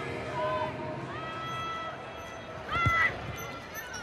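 Rugby stadium sound from the field: players' held, shouted calls over crowd noise, with one louder shout and a short thump about three seconds in.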